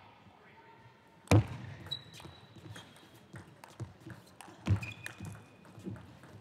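A table tennis rally: the celluloid-type ball clicks off the rackets and the table in a quick run of sharp ticks. Brief squeaks come from shoes on the court floor. Two loud thumps stand out, the first and loudest about a second in, the second near the end.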